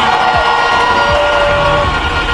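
Large outdoor crowd cheering and shouting, a dense, steady wash of many voices.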